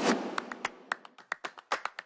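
A sharp click as a mains plug is pushed into a wall socket, followed by a quick run of light ticks, several a second.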